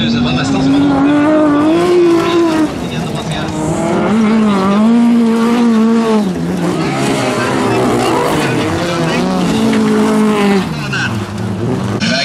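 Bilcross race cars' engines revving hard, the pitch climbing, holding and dropping several times as the drivers accelerate and lift off.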